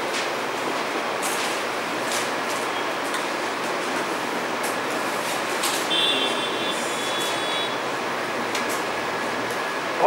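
Steady hiss of background room noise, with a few faint clicks and a brief high, thin squeak about six seconds in.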